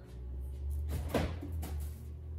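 Items inside an open refrigerator being handled: a few light knocks and clatters over a steady low hum.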